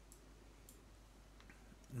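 A few faint computer-mouse clicks over quiet room tone.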